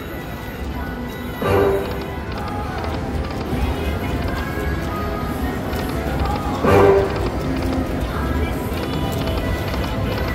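Buffalo Chief slot machine spinning its reels over and over, its game music and spin sounds playing over a steady casino background hum. Two short louder bursts of sound come about one and a half seconds in and again near seven seconds.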